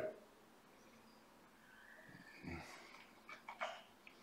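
Faint mouth and breath sounds of a person tasting a sip of whisky: after a second or so of near silence, a soft breath through the nose and a few small wet lip and tongue smacks.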